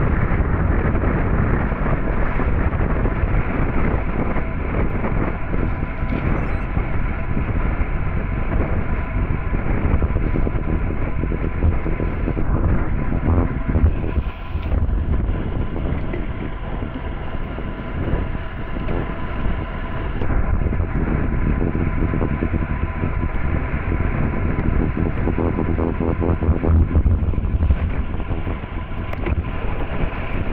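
Steady wind rush on the microphone of a camera mounted on a racing bicycle moving fast, mixed with tyre noise on a wet road.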